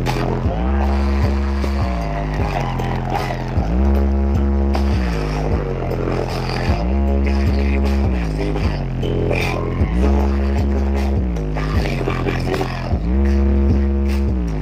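Dance music with very heavy, deep bass played loud through a large outdoor speaker stack. A bass phrase repeats about every three seconds and steps down in pitch at the end of each phrase.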